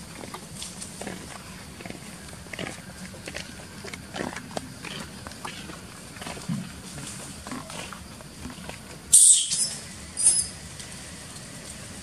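Soft crackling and rustling of dry leaf litter as macaques move and forage, then two short, loud, high-pitched monkey screams about nine and ten seconds in.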